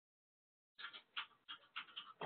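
Near silence: a moment of dead quiet, then faint, short breathy puffs about three times a second.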